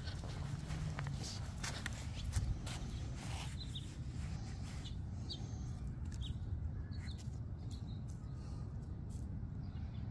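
Outdoor walking ambience: steady low rumble of wind on the microphone, light clicks of footsteps, and a few short, faint bird chirps.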